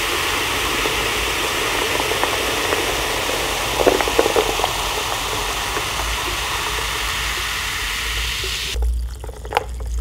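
Fizzy carbonated drink being sipped steadily through a straw: a continuous fizzing hiss with a few swallows about four seconds in, cutting off suddenly near the end when the sipping stops.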